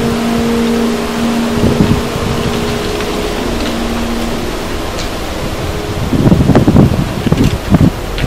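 Steady loud rushing noise. A low held drone under it fades out about halfway through, and louder uneven low rumbles come in near the end.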